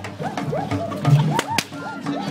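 Tlacololero dancers' braided whips (chirriones) cracking sharply, a few cracks in quick succession, over music and voices.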